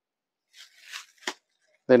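Soft rustling of a folded Banaras fancy saree being handled, with one short tap about a second and a quarter in as it is set down on the counter.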